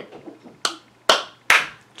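Three sharp hand claps, a little under half a second apart; the first is fainter, the last two louder.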